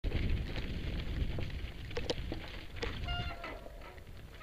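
Mountain bike rolling down a rocky gravel trail, heard from a helmet camera: a low rumble of wind and tyres over loose rock with scattered rattles and clicks from the bike. A brief high squeal sounds about three seconds in.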